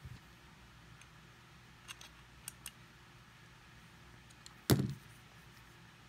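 A few faint clicks as a freshly reassembled Giantmouse GM3 liner-lock pocketknife is handled and checked for blade play with its pivot screw just tightened, then a single louder knock about three-quarters of the way through.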